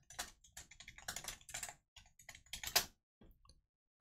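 Computer keyboard typing: a quick run of light key clicks that stops about three seconds in.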